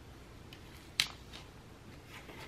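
A sharp paper crackle about a second in, followed by a fainter one: the backing liner of a paper planner sticker being peeled back and handled.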